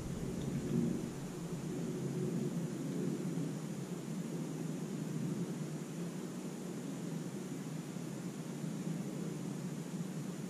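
Steady low background rumble with a faint, indistinct murmur: the room tone of the recording, with no clear event.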